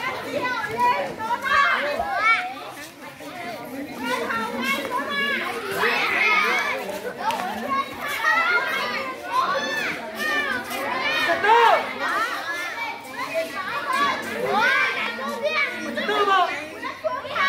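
A crowd of children at play, many high voices shouting and chattering over one another without a break.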